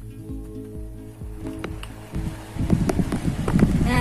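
Background music with a steady beat; about two and a half seconds in, a loud, irregular buffeting rumble begins as air from a small electric desk fan, just switched on, blows onto the microphone.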